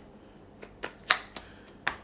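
Tarot cards being handled and flicked, giving several short sharp clicks with the loudest about a second in.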